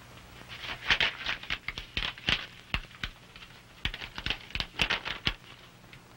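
Paper being handled: a run of short, irregular crackles and rustles as a folded message is opened and unfolded.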